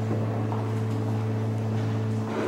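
Pipe organ holding a sustained chord over a steady low bass note.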